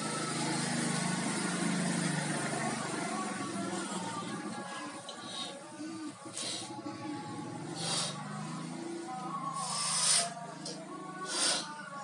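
Background music with steady tones throughout. In the second half come four short puffs of breath, blown into a latex balloon as it is inflated by mouth.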